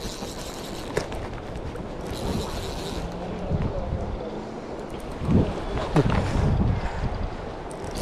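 Wind buffeting the microphone over a flowing river, with a brief hiss about two seconds in and a short low hum a second later. Faint voices come in near the end.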